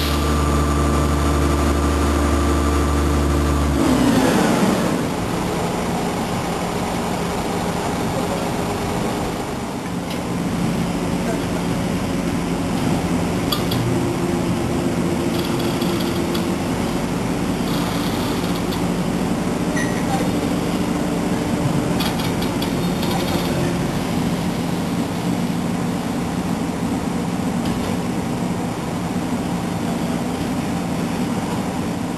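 Mobile crane's diesel engine running at high revs, then dropping at about four seconds to a lower, steady run while the crane holds the load.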